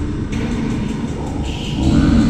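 Ambient music with a deep, rumbling sustained bass drone; a higher tone comes in near the end.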